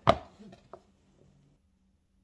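A hand striking a desk once: one sharp knock right at the start, then a faint click about three quarters of a second in.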